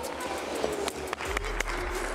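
Indoor ice-rink ambience: skate blades scraping and clicking on the ice, with faint children's voices echoing in the arena.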